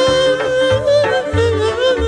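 Lăutărească song: a male voice holds a long, ornamented note with a wavering vibrato, sliding up into it at the start, over a band keeping an alternating bass line.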